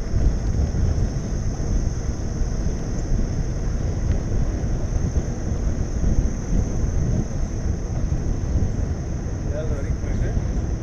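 Wind buffeting the microphone of a camera on a moving bicycle: a steady, uneven low rumble mixed with tyre noise on pavement, over a constant high-pitched buzz. A faint voice comes in near the end.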